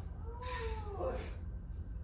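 Newborn baby crying briefly: one short rising-and-falling wail, then a shorter rising one.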